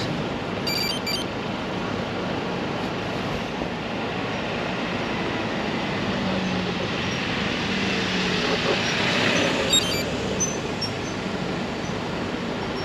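Road traffic at a city intersection: a steady hum of vehicles that swells as a vehicle comes up close about eight to ten seconds in.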